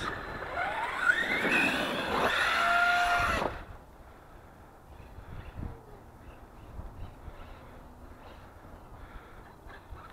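Arrma Kraton RC monster truck's electric motor whining as it drives and revs across grass close by, its pitch gliding up and falling. About three and a half seconds in it drops away to a faint sound as the truck is far off.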